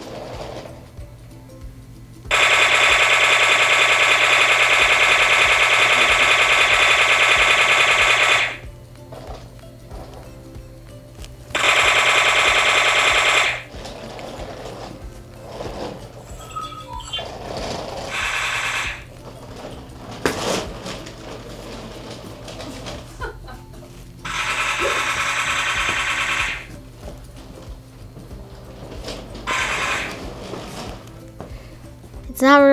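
DJI RoboMaster S1's electric drive motors buzzing in bursts as it drives: one long steady burst of about six seconds, then shorter bursts of about two seconds, each starting and stopping abruptly. A lower hum and a few light knocks fill the gaps.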